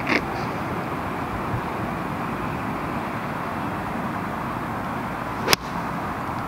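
A single crisp click about five and a half seconds in: a new Cleveland gap wedge striking a golf ball on a 99-yard shot from the tee, over a steady outdoor hiss.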